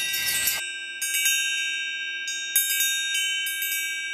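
Metal chimes ringing: a few high, sustained tones struck again and again at irregular moments and slowly fading. They begin about half a second in, where the live room sound cuts off.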